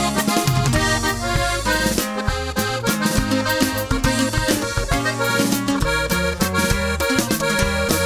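Instrumental opening of a Mexican corrido: an accordion plays the melody over a stepping bass line and a steady rhythm backing.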